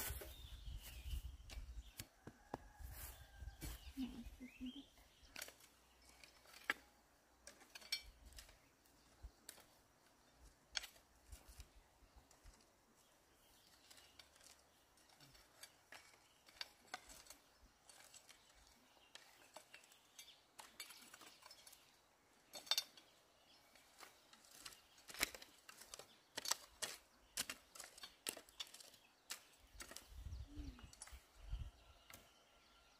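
Garden hoes chopping and scraping into loose soil, an irregular run of light scrapes and clicks, with a few sharper knocks.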